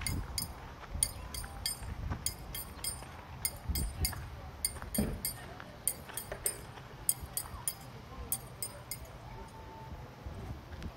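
Footsteps crunching on a dirt and gravel street, a steady run of short, sharp clicks a few times a second over low thuds, with a faint murmur of voices in the background.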